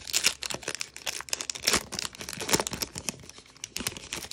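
Foil trading-card pack wrapper being torn open and crinkled by hand, a dense run of irregular crackles.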